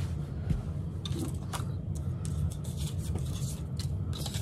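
Hands smoothing and shifting cotton fabric and paper pattern pieces on a cutting mat: soft rustling with a few light clicks and taps, over a steady low background hum.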